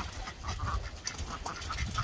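Young waterfowl in a pen calling softly, many short calls in quick succession, over a low rumble.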